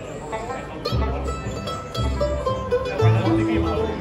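Bluegrass band playing: banjo, mandolin, acoustic guitar and upright bass. Strong low bass notes come in about a second in and the music grows louder from there.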